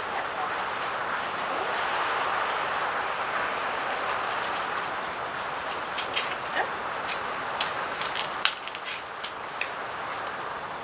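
Steady background hiss with a scatter of small sharp clicks and taps in the second half, as hands handle a small plastic cap and pieces of pool-noodle foam on a tabletop.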